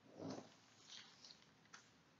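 A sheet of calligraphy paper is slid across a cloth mat and pressed flat by hand: a soft rustle just after the start, then a few light paper crinkles.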